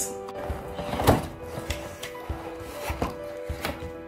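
Cardboard shipping box being opened by hand: a run of knocks and scrapes as the flaps are pulled open, the loudest about a second in, over soft background music.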